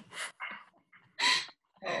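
Women laughing over a video call: a few short, breathy bursts of laughter with gaps between them.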